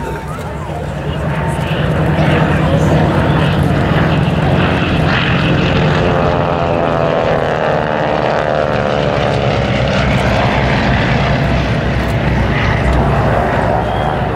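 Piston engines and propellers of a Beech Staggerwing, a Spartan Executive and a Travel Air Mystery Ship flying past low together. The drone swells about two seconds in and stays loud, with a sweeping change in tone as the aircraft pass about halfway through.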